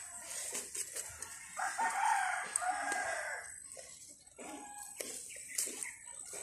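A rooster crowing once, a single call about two seconds long that starts about one and a half seconds in, with a few light clicks and rustles of handling around it.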